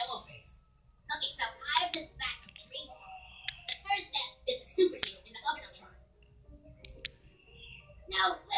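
Cartoon character voices with background music, played from a TV and picked up in the room, with a few sharp clicks scattered through.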